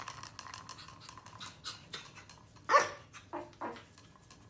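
A small long-haired dog gives one loud bark and then two shorter ones near the end, after a run of short clicking and rustling sounds.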